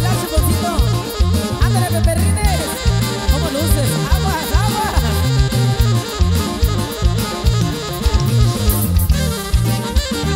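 Live norteño band with saxophone playing an instrumental passage: a saxophone lead over drum kit and a stepping bass line.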